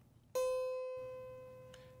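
A single musical note struck once about a third of a second in, with a sharp attack and a ringing tone that fades away steadily.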